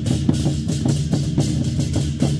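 Chinese war drums (zhangu) beaten together with clashing hand cymbals in a fast, steady rhythm, the cymbals crashing about four times a second over the drums' low boom.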